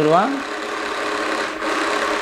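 Small electric motor of a toy ATM piggy bank's note feeder running steadily as it draws a paper banknote in through the slot.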